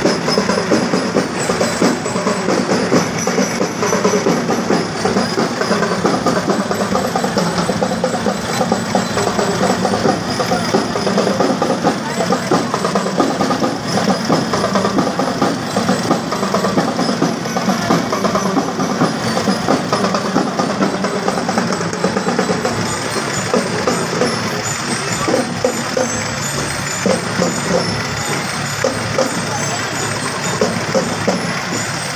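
Farm tractor engines running as the tractors drive past, under the chatter of a crowd, with music and some drumming in the mix.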